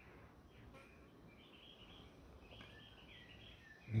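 Faint birdsong: a few soft chirps over quiet outdoor background noise.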